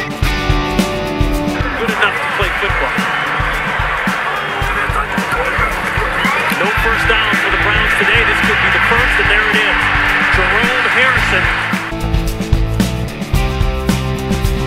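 Rock music with a large crowd cheering over it from about two seconds in until near the end.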